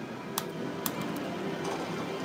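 Arcade machine music playing in the background, with two sharp clicks less than a second in.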